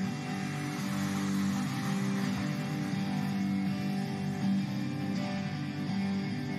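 Live band playing the slow opening of a pop ballad: held, steady chords with keyboard and guitar.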